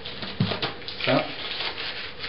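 Masking tape being peeled and rubbed off an acoustic guitar's wooden top, giving a dry, rasping rub with small crackles.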